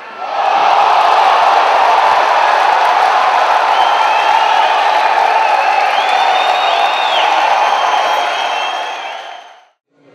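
Large fight crowd cheering and shouting, loud and sustained; it swells up about half a second in and fades out near the end.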